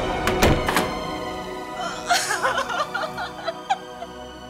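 Dramatic background score: three sharp percussive hits in the first second, then a thinner run of short pitched notes.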